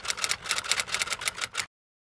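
Typing sound effect: a quick, even run of key clicks, about eight a second, that stops abruptly near the end.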